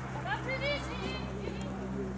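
Indistinct voice-like sounds, short pitched glides about half a second in, over a steady low hum.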